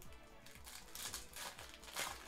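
Faint crinkling of a foil trading-card booster pack wrapper as it is handled and torn open, in soft rustles about a second in and again near the end.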